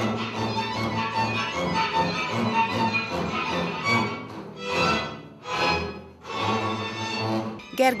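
Several double basses bowed together, playing Hungarian folk music. The playing swells and dips twice about halfway through.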